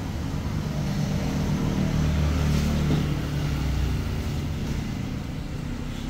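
An engine running steadily, rising in level about two seconds in and easing back after about four seconds.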